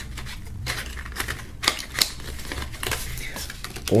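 Black cardboard box insert being handled and fitted back into its box: irregular light clicks and taps of cardboard.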